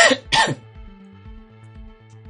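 Background music with a steady repeating low beat. At the start come two short, loud, harsh bursts about half a second apart, the first the louder.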